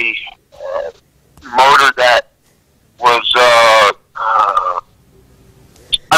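A man's hesitant speech: drawn-out filler sounds and halting words, with pauses between them.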